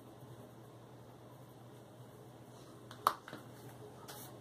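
Faint scratching of a Prismacolor Premier colored pencil stroking on paper, then a sharp click about three seconds in, followed by a smaller one.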